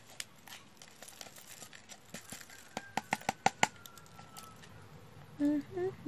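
Light clicks and taps of small plastic diamond-painting drills and tools being handled, with a quick run of about seven sharp clicks in the middle. A woman hums briefly near the end.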